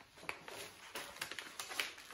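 Sheets of copy paper being handled and folded: faint rustling with a few short crackles.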